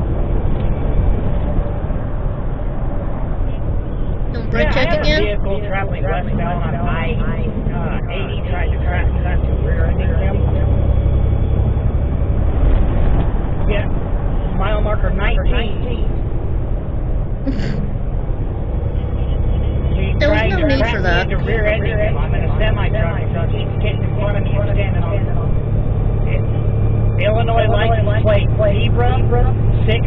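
Semi-truck cab noise picked up by a dash cam: a steady low engine and road rumble, with several stretches of indistinct talking over it.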